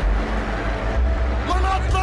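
Car engine and road rumble heard from inside the cabin, a steady low drone, with a man starting to shout about one and a half seconds in.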